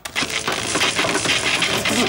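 Electric-shock sound effect: a loud crackling, rapid clicking buzz that starts suddenly as the television plug goes into the socket, marking a comic electrocution.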